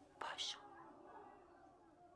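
A quiet whisper: a short hissy, breathy syllable about a quarter of a second in, then a faint, low murmur of voice.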